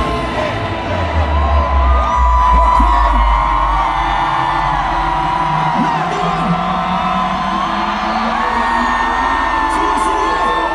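Amplified concert music in a large arena, with heavy bass that fades about four seconds in, under a crowd of fans screaming and whooping.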